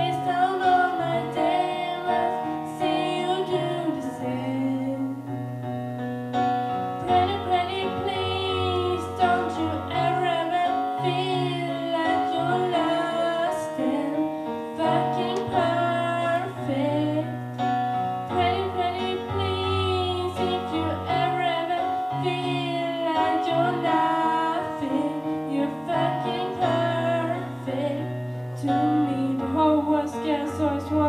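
A girl singing a slow song solo into a microphone, with wavering held notes, over piano accompaniment playing sustained chords.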